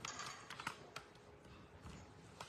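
A few faint, scattered clicks and light knocks from a rollator walker and the papers and small objects being handled on it.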